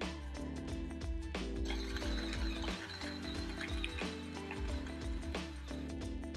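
Background music over the xBloom coffee machine's built-in burr grinder grinding a pod's whole beans. The steady grinding noise sets in about a second and a half in.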